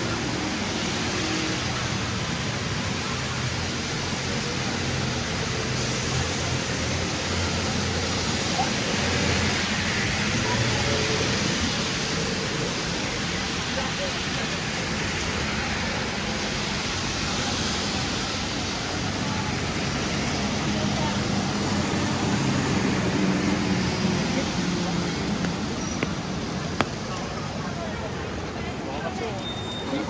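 Steady wet-street ambience in the rain: an even hiss of rain and tyres on wet road under passing traffic, with passers-by talking now and then. A sharp tick sounds near the end.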